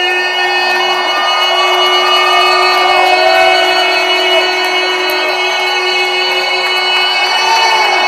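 A man's voice holding one long final note of the national anthem, which ends about five seconds in, while the arena crowd cheers and whoops over it; the cheering carries on after the note stops.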